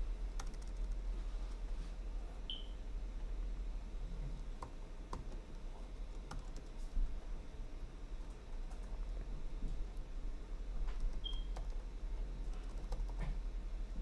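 Scattered keystrokes on a computer keyboard as code is typed, over a steady low hum.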